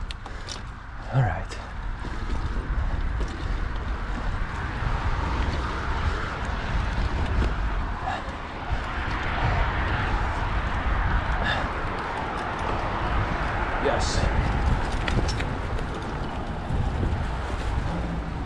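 Mountain bike rolling along a dirt singletrack: a steady noise from the tyres on the trail, with occasional clicks and rattles from the bike. Wind rumbles on the action-camera microphone.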